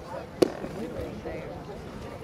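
A pitched baseball smacking into the catcher's mitt with one sharp pop, over the chatter of voices around the field.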